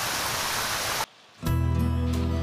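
A steady rain sound, a soft even hiss, for about a second, then it cuts off suddenly. After a brief gap, background music with held notes over a low drone begins.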